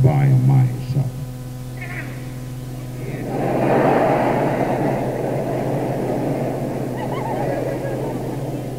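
A brief spoken phrase at the start, then a crowd's applause swells about three seconds in and slowly fades, over a steady hum from the old cassette tape.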